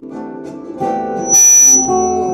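Guitar playing, with sustained picked notes from a semi-hollow electric guitar. About one and a half seconds in, a brief, loud burst of hiss cuts across the music and leaves a thin high tone ringing after it.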